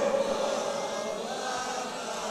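A man's chanted Arabic invocation over a public-address system: the held note ends at the very start and dies away in the hall's echo, leaving a quiet pause with a faint steady hum.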